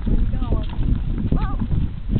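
Loaded wagon's wheels and cargo rattling and knocking as it rolls over rough, cracked asphalt, with short high child voices about half a second in and near a second and a half.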